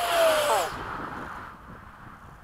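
Electric ducted-fan RC F-16 jet making a fast low pass: the fan's rushing whine falls in pitch and fades within the first second as the jet flies away.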